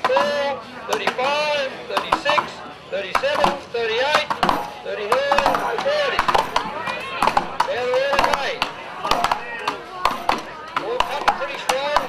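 Steel axes chopping into upright wooden blocks in a standing-block woodchop, several competitors' strikes overlapping in a fast, irregular patter of sharp hits.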